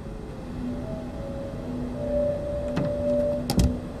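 Low, sustained eerie drone tones from a horror film score, shifting pitch in steps. Near the end come a couple of faint clicks, then a single sharp knock, the loudest sound.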